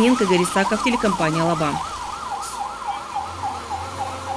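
Fire engine siren sounding a fast up-and-down warble, about four swings a second.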